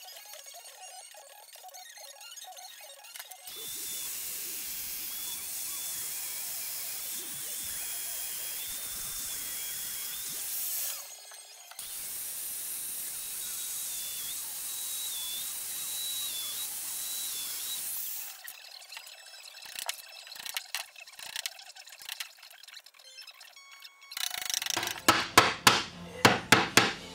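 Festool Domino joiner running and plunging mortises: two cuts of several seconds each with a short stop between, its motor whine wavering under load. A scatter of clicks and then several sharp knocks follow near the end.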